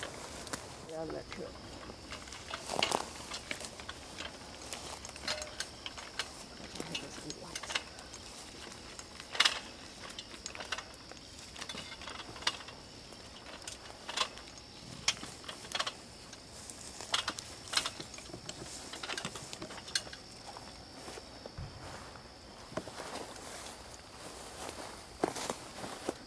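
Scattered clicks, knocks and clinks of a man climbing a ladder fixed to a pine trunk, with his climbing harness and metal gear rattling. A faint steady high-pitched whine runs beneath from about a second in.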